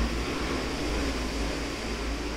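Steady background noise: an even hiss with a low rumble underneath.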